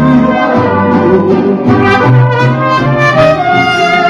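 Mariachi band playing an instrumental passage of a ranchera, trumpets to the fore over violins and a moving bass line.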